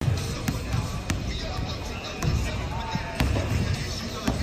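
Basketballs bouncing on a hardwood gym floor: irregular low thumps roughly a second apart, with a few sharp smacks, over faint voices and music.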